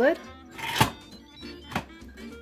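Lid of an Insignia electric pressure cooker being closed: a sharp clunk with a brief metallic ring a little under a second in, then a lighter click near the end.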